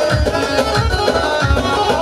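Kurdish wedding dance music from a live band: a steady drum beat, about two strokes a second, under a sustained melody line, with no singing.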